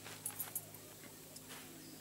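Faint rustling and a few light ticks of black plastic sheeting being handled, over a low steady hum.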